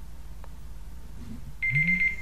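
A timer alarm starts beeping near the end: a steady high-pitched beep, the signal that the one-minute writing time is up.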